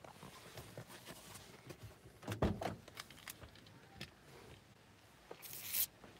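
Quiet inside a parked car, with scattered faint clicks and knocks of a handheld phone being moved, a thump about two and a half seconds in, and a short hissing rustle near the end.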